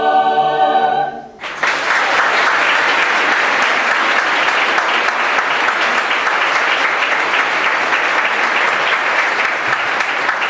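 Mixed choir holding a final sustained chord that is cut off about a second in; after a brief hush, an audience bursts into steady applause that carries on to the end.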